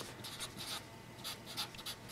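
A Sharpie felt-tip marker writing on paper: a quiet run of short scratchy strokes as a word is written letter by letter.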